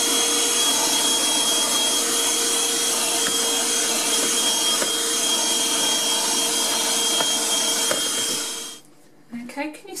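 HoLIFE cordless handheld vacuum cleaner running with its rubber wet nozzle on a soaked car carpet, sucking up water: a steady high motor whine over rushing air. It winds down and stops about nine seconds in.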